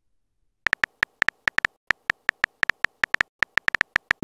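Keyboard typing sound effect of a texting-story app: a quick run of short, slightly pitched clicks, one per typed letter, starting about two-thirds of a second in at an uneven pace of several clicks a second.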